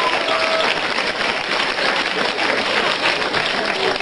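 Studio audience applauding steadily, a dense patter of many hands clapping.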